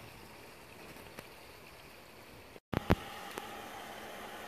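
Faint steady outdoor background noise, cut off by a brief dropout about two and a half seconds in, then resuming slightly louder with a couple of sharp clicks just after the break.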